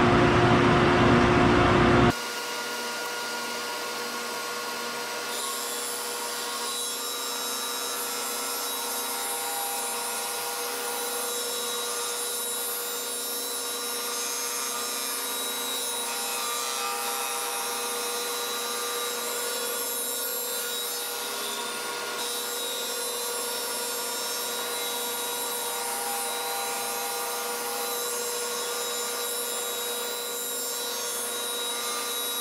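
A Shopsmith Mark V 520 running as a disc sander alongside a dust collector, steady motor and blower noise with a round wooden blank being turned by hand against the sanding disc to true its edge. A louder stretch of machine noise cuts off abruptly about two seconds in.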